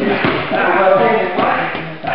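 A man's voice talking, words unclear, with a short thud at the very start.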